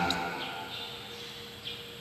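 A pause in speech in a large, echoing church: the voice's echo dies away over about half a second, leaving faint room noise with a faint steady hum.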